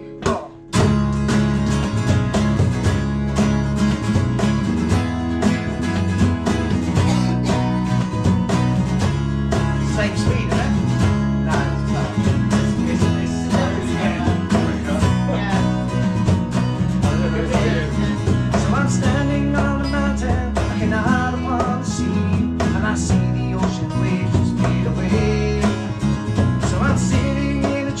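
Instrumental intro played by a small acoustic band: strummed acoustic guitars, electric bass and fiddle come in together about half a second in and carry on steadily.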